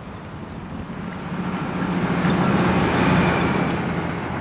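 A large truck passing close by on a highway, its engine hum and tyre noise swelling to a peak about three seconds in, then easing off.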